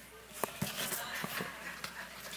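A few soft clicks and knocks of a plastic helmet being handled and lifted off the head, close to a headset microphone, with a man saying "okay".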